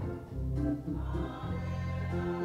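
Gospel music: a choir singing over held low chords that change about every second.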